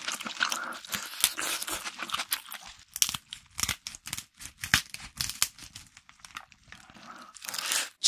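Kitchen scissors snipping through a giant lobster's shell and body, with the shell crackling and tearing as it is cut and pulled apart. The sound is a rapid string of sharp cracks and snips that thins out near the end and gives way to a brief rustle.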